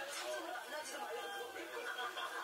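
Indistinct voices talking, too unclear to make out words.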